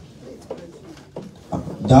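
A short pause in a man's speech over a microphone, with faint voices in the room, then he resumes speaking near the end.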